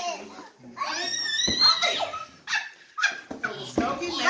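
A young child's excited, high-pitched voice, rising and falling in pitch without clear words, with a couple of brief knocks.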